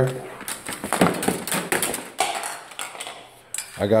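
Rummaging through a plastic toolbox for a length of clear plastic tubing: hard tools and parts clattering and knocking irregularly, with short rustling noises in between.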